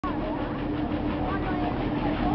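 Steady machinery hum from the Ripsaw Top Spin amusement ride, under the scattered voices of a crowd.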